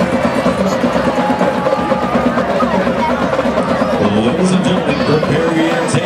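Stadium crowd noise: many people talking at once, with music and a few percussive taps in the background.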